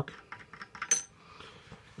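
Trombone slide lock being worked loose by hand: a few small metal clicks and taps, the loudest about a second in with a brief bright ring.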